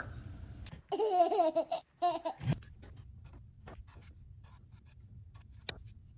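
A felt-tip marker squeaking on the drawing board in a wavering squeal that lasts about a second and a half, then faint scratchy ticks as it keeps drawing.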